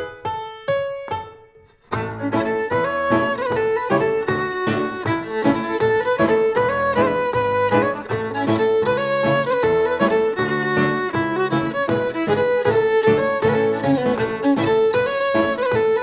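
Cape Breton fiddle and piano playing a traditional march. A few struck piano chords ring out and fade, then the fiddle comes in about two seconds in over a full piano accompaniment.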